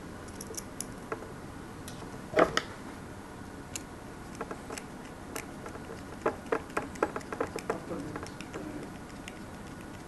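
Light clicks and ticks of a small screwdriver turning the screws of a metal D-sub connector housing. There is a louder knock about two and a half seconds in, and a quick run of sharper ticks from about six to eight seconds in as the screw is driven.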